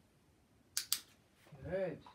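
Two sharp clicks in quick succession about three-quarters of a second in, then a short voiced sound, likely a single spoken word, rising and falling in pitch near the end.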